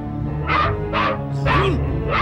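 A cartoon dog barks four times, about half a second apart, over a steady music track.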